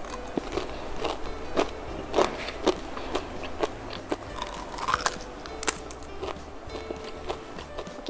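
Crunching bites and chewing of a crispy, lacy fried crepe roll: many irregular sharp cracks of brittle strands breaking. Background music plays underneath.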